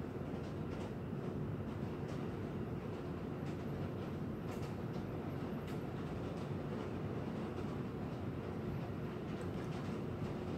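Steady low background rumble with a faint steady hum and a few faint, scattered ticks. Nothing from the damper stands out above it.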